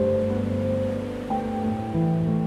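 Gentle, slow solo piano music holding soft sustained notes, over a steady wash of ocean waves breaking on a beach.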